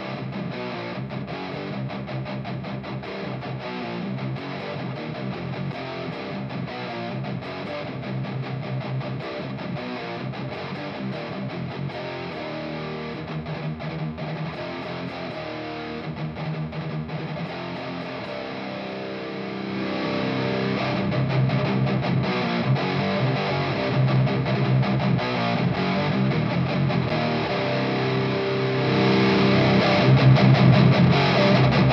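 Electric guitar played through a Haunted Labs Old Ruin distortion pedal: heavy riffing with thick, saturated distortion in a 90s doom and death metal style, as the pedal's volume setting is being tried out. It gets clearly louder about two-thirds of the way through.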